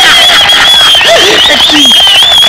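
A voice speaking loudly over quick hand clapping from a crowd, with a high wavering tone held throughout.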